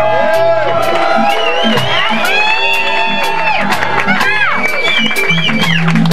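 Live roots reggae band playing: the drum kit keeps an even beat of sharp strikes under sliding, bending melodic lines.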